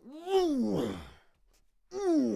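An older man's pained vocal cry as if struck in a fight: one voiced outburst about a second long that climbs briefly and then slides down in pitch, and near the end a second cry that starts high and falls.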